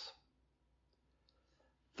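Near silence: a pause in a man's speech, with only faint room tone.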